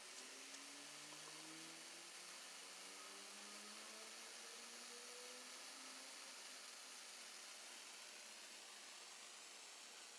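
Faint steady hiss of corona discharge from the wire tip atop a 2N3055 Slayer exciter coil running on about 45 volts DC, with a few faint tones slowly rising in pitch over the first few seconds.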